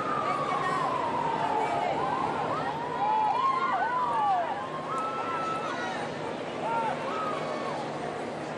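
Large outdoor crowd murmuring, with scattered shouts and calls rising above the hubbub. A long tone slides down in pitch and fades out about two seconds in.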